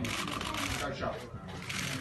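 Many camera shutters clicking in fast, overlapping runs, a dense clatter of small clicks, with faint voices under it.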